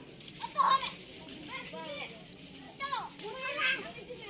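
Several children's voices calling and chattering in short, scattered shouts, with no clear words.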